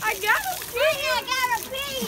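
Young children's high-pitched voices calling out as they play.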